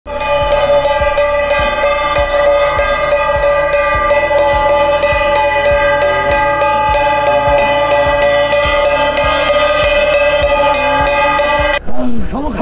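A hand-held metal gong beaten with a wooden striker in a quick, steady rhythm, ringing on between strokes, until it stops suddenly near the end. It is a village crier's warning to go to a safe place ahead of a cyclone.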